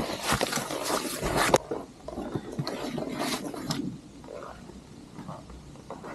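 A backpack being picked up and handled: loud rustling of its fabric and straps for about a second and a half, then a second burst of rustling about three seconds in, trailing off into quieter scattered scuffs and ticks.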